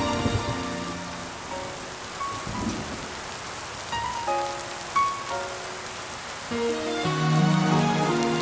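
Steady rain falling, under soft background music. A few single held notes sound in the middle, then the music swells into fuller, louder chords about six and a half seconds in.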